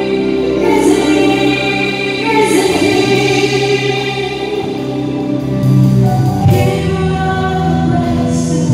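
Live Christian worship band playing: several vocalists singing together in long held notes over electric guitars, keyboards and drums.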